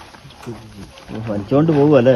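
A man's voice calling out in the field, rising and falling in pitch, loudest near the end; quieter voices come before it.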